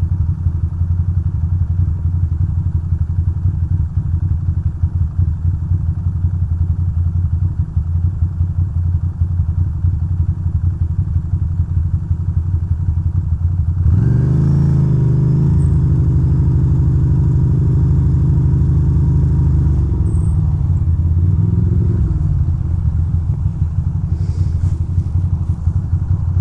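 2006 Ducati Monster 620's air-cooled L-twin idling with a lumpy, steady beat for about fourteen seconds. It then revs up as the bike pulls away and rides on, the pitch rising and falling through the gears.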